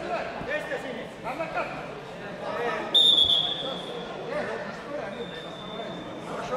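Referee's whistle: one shrill blast held for about a second, halfway through, then a fainter, longer blast near the end, stopping the ground wrestling. Spectators' voices chatter throughout.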